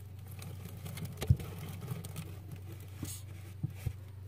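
Faint handling noises as hides and décor are shifted in a cockroach enclosure: a few soft knocks and scrapes, the clearest about a second in and two more near the end, over a steady low hum.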